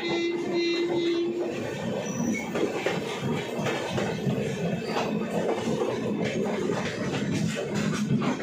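Passenger train running on rails with a steady rumble and clatter. A horn sounds one held note for about a second and a half at the start.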